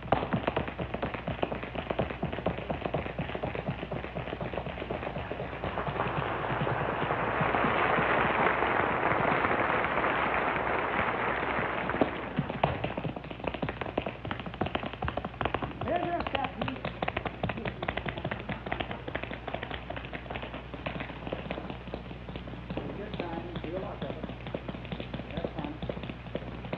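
Solo tap dancing: rapid clicking of tap shoes on a stage floor with the band mostly silent. Audience applause swells in the middle for several seconds, then the taps carry on alone.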